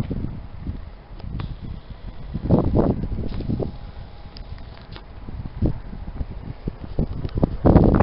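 Wind buffeting the camera's microphone in uneven low rumbling gusts, louder about two and a half seconds in.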